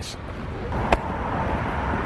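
Steady outdoor traffic rumble, with a single sharp click about a second in.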